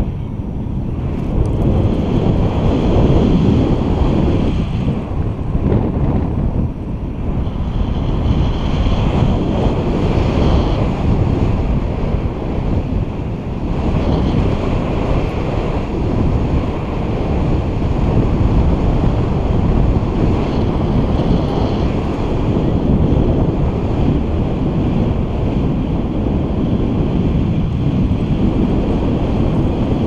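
Loud, steady wind rumbling over the microphone of a camera on a paraglider in flight, from the rush of air past the pilot's harness and risers.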